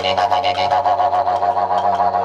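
Didgeridoo played with a steady low drone, its upper overtones wavering, and quick rhythmic accents running through it.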